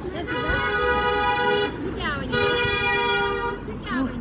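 Vehicle horn sounding twice, two long steady honks about half a second apart.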